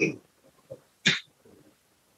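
Two short breathy vocal noises from a man, about a second apart. The first is brief and voiced. The second is a sharp hissing breath.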